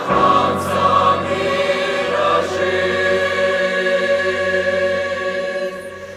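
A mixed choir of men and women singing a Russian hymn in long, held chords. The singing drops away briefly at the very end, a pause before the next phrase.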